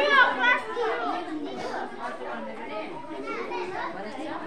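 A crowd of young children chattering, many voices talking over one another, with one voice louder just at the start.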